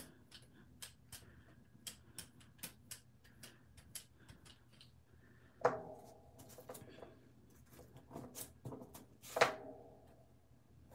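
Paintbrush worked across a gel printing plate, a run of light, irregular scratchy ticks. Then, twice, a louder rustle with a brief ring as a plastic stencil sheet is picked up and handled.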